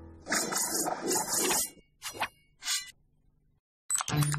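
A short TV logo sound effect: a noisy burst of about a second and a half, followed by two brief sounds. A moment of silence follows before the next channel ident's music begins at the very end.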